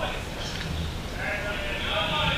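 Players' voices shouting drawn-out calls across the field, echoing in a large indoor hall, starting about a second in.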